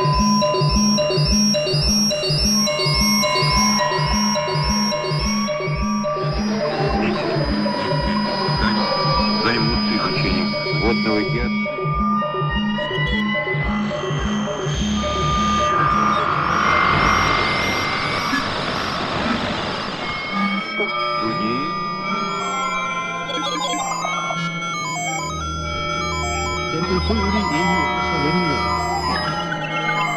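Electronic music made from shortwave radio sounds. For the first six seconds a regular pulse beats a little over twice a second under chirping high tones. It turns into a wash of noise with drifting tones, and from about twenty seconds on there are steady held tones with warbling high chirps and a slow low throb.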